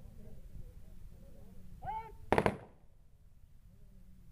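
A short shouted drill command, then a single rifle volley fired together by a guard of honour. The shots land almost as one sharp crack with a brief ring-out: a funeral gun salute.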